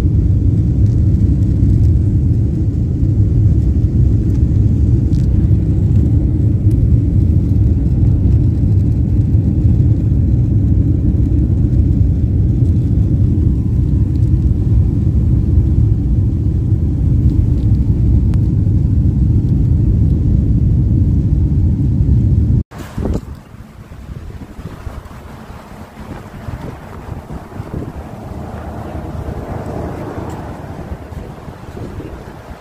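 Airliner cabin noise: the steady, loud low rumble of jet engines and airflow heard from a window seat in flight. About three-quarters of the way through it cuts off sharply to a much quieter outdoor noise of wind on the microphone.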